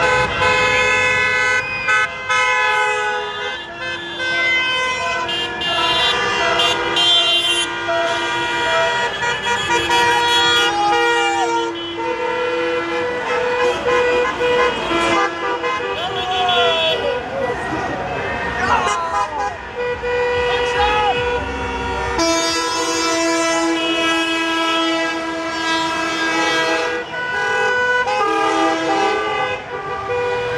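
Many car horns honking at once in celebration, in long overlapping blasts that start and stop all through, over cars driving past. Voices shout in the middle.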